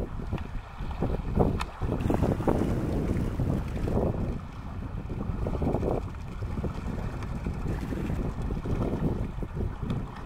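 Wind buffeting the microphone over a low, continuous rumble of distant thunder from a passing storm.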